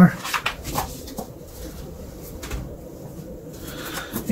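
A deck of tarot cards being gathered and squared up by hand on a tabletop: a few light taps and rustles, most of them in the first second.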